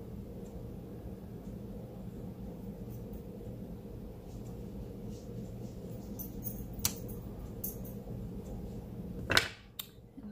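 Clear acrylic stamp block being handled on a craft table: a few light clicks a few seconds in, then a sharper clack near the end as the block is lifted off the cardstock, over a steady low hum.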